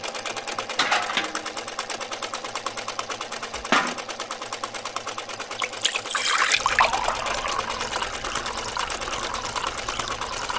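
Small electric motor driving a miniature belt-driven grinder, giving a fast, even rattle throughout, with a sharp click a little under four seconds in. From about six seconds in, a thin stream of juice splashes into a small metal bucket.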